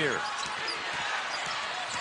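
A basketball being dribbled on a hardwood court, a few faint bounces heard over the steady noise of an arena crowd.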